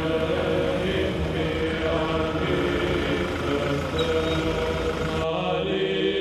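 Orthodox church chanting by a group of voices, long held notes sung steadily, with a low rumble underneath; the sound changes abruptly near the end.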